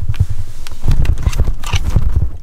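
Handling noise from a handheld camera: a quick, uneven run of low thuds and rubbing as it is carried and moved close to bedding.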